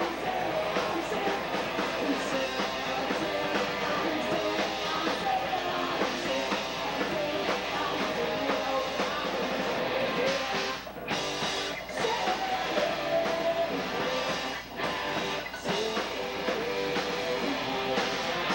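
Punk rock band playing live: electric guitars, drums and a singer at full volume. The music breaks off for a few brief stops in the second half.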